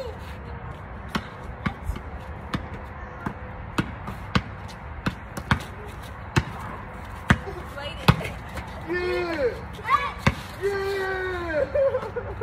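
A basketball dribbled on a concrete driveway, its sharp bounces coming about one and a half a second. In the last few seconds voices call out over the dribbling.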